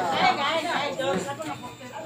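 Several people's voices talking and chattering, loudest in the first second.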